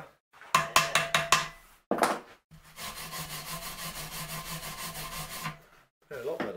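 Hand wire brush scrubbed against a metal bar clamped in a bench vise: a handful of quick scraping strokes, a knock, then about three seconds of steady scrubbing.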